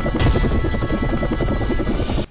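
Helicopter rotor sound effect, a fast, even chopping, mixed with jingle music; it starts and stops abruptly.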